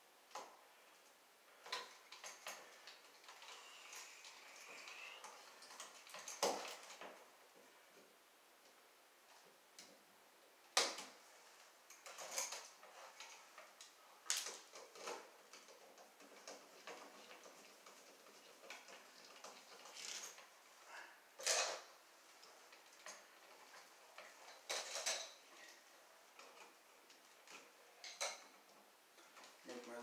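Scattered small metallic clicks and scrapes of hand tools, pliers and a screwdriver, working copper wire around a receptacle's terminal screws, about a dozen at irregular intervals.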